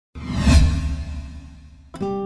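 Cinematic whoosh sound effect with a deep low boom, swelling to its peak about half a second in and then fading away. Guitar music starts right at the end.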